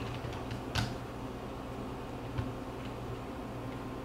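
Small plastic handling clicks as a parachute unit is fitted onto a drone's plastic shell, one sharper click about a second in and a few faint ones later, over a low steady hum.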